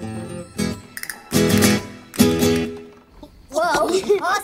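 Acoustic guitar playing softly, then struck with three loud chords about half a second, a second and a half, and two and a quarter seconds in. A voice comes in near the end.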